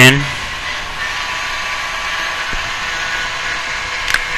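Steady background hiss with a few faint high steady tones running under it, the noise floor of a home recording set-up, and one faint soft tick about halfway through.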